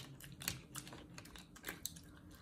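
Faint, irregular clicks of long acrylic nails and mussel shells tapping together as cooked mussels are picked from a tray, about five light clicks in two seconds.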